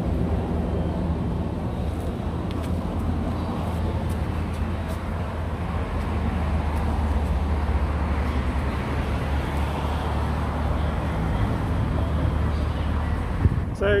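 A vehicle engine running at a steady idle close by, a low, even hum with light traffic noise.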